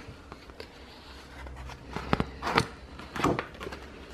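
A few soft knocks and rustles from a paper recipe card being handled and turned in a ring binder, over a faint low hum.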